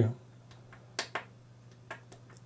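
Monitor's on-screen-menu control joystick being pressed and nudged: two short sharp clicks close together about a second in, and a fainter click near the end.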